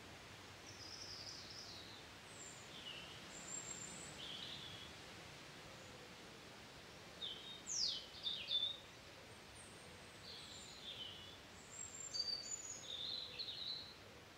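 Songbirds calling in short, scattered chirps and quick falling whistles over a steady faint hiss of outdoor ambience, with the busiest calling about halfway through and again near the end.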